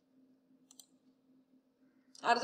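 Near silence broken by two faint clicks close together, a little past a third of the way in: a computer mouse clicked to advance the presentation slide.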